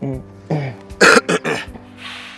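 A man coughs and clears his throat: a short voiced sound, then one loud harsh cough about a second in, followed by two or three smaller ones. Soft background music with held tones plays underneath.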